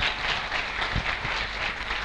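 Applause: a crowd of people clapping steadily.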